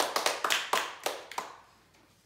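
A few people clapping their hands: a short run of quick claps that fades out about a second and a half in.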